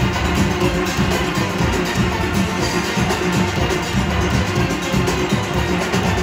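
A full steel orchestra playing live: many steelpans together over drum kit and percussion keeping a steady beat.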